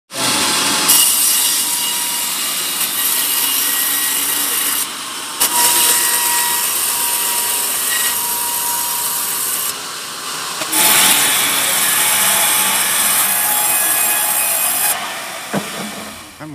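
Band sawmill blade cutting through a teak log: a loud, steady hiss with a faint thin whine, dipping briefly twice and fading near the end.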